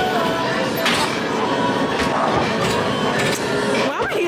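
Busy arcade din of indistinct chatter and music, with a few sharp knocks about one second and three and a half seconds in.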